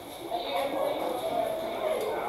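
Indistinct talking of several people, no clear words, with a light knock or clink or two.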